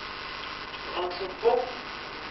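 A steady electrical mains hum runs under a woman's faint, indistinct speech into a handheld microphone. A short, louder syllable comes about a second and a half in.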